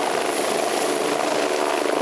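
Medical helicopter lifting off, its turbine engine and rotor running steadily with a constant high whine over dense rotor noise.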